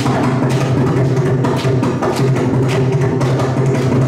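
Mridangam strokes in a fast, dense rhythmic passage over a steady drone, played as a percussion solo with the violin silent.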